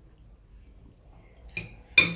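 A fork clinking against a plate twice. The first clink is light, about a second and a half in; the second, near the end, is sharper and louder and rings briefly.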